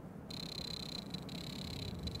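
A steady high-pitched electronic tone that starts suddenly about a third of a second in.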